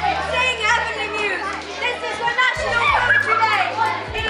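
Many young voices talking over one another in an overlapping babble, with background music of sustained low notes that shift to a new note about two and a half seconds in.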